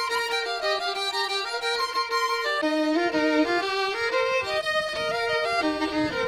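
Fiddle playing a quick traditional Irish dance tune, a run of short notes stepping up and down without a break.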